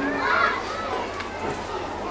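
Overlapping voices of a roomful of school students talking at once.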